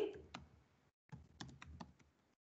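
Faint computer-keyboard typing: one key click, then a quick run of about six clicks as a word is typed.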